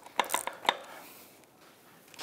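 A few light, sharp metal clicks from a nut driver working a small bolt back into its hole by hand, all within the first second.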